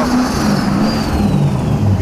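BMW E30 drift car's engine running under throttle as the car slides through a drift, its pitch wavering with the revs. A thin high whine falls slowly in pitch through the whole stretch.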